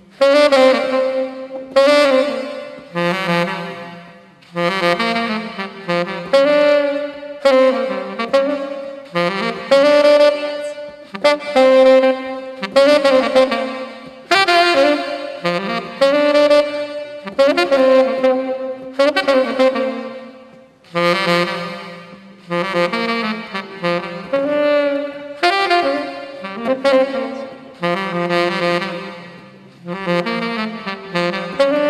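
Saxophone playing a smooth jazz melody live, in phrases of one to two seconds with short breaths between them.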